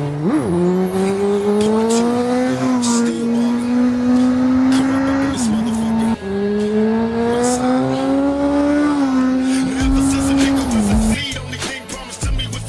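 Honda CBR929RR inline-four sportbike engine accelerating hard, its pitch climbing steadily and dropping sharply at each upshift, about three times, before the sound breaks off near the end.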